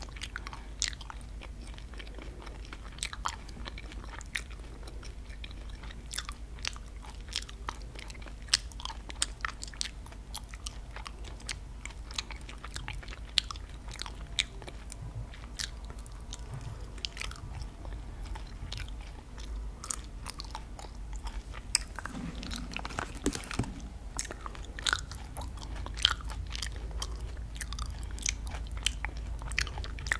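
Close-miked biting and chewing of sour gummy worms: many sharp, irregular mouth clicks and smacks throughout, with a steady low hum underneath.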